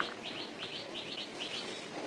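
A bird chirping in a quick run of short, high notes, several a second, over the soft gritty rustle of hands digging through dry cement powder. A single sharp click at the very start.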